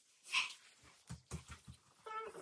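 A brief breathy sound, then a quick run of soft low thuds: a small child's footsteps running across a wooden floor.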